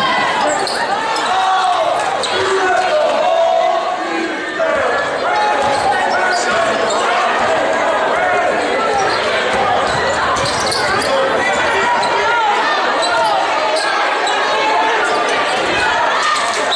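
A basketball dribbled on a hardwood gym floor under the steady chatter of many spectators' voices, echoing in a large gymnasium.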